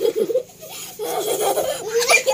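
A young child laughing: a short burst at the start, then a longer run of giggling from about a second in.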